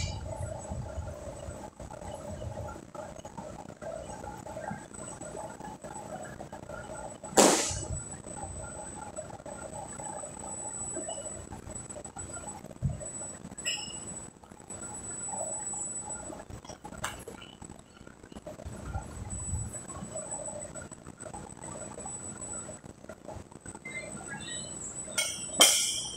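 Weight plates and barbell handled: one sharp clank about a third of the way in and a quick cluster of clanks near the end, over steady gym room noise with a faint high-pitched whine.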